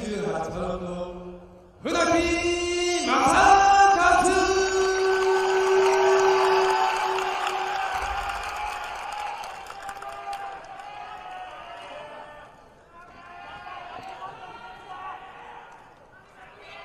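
Ring announcer calling out a fighter's name over the PA in a drawn-out, sung style, holding one note for several seconds, over a noisy haze of crowd that fades away; quieter voices follow near the end.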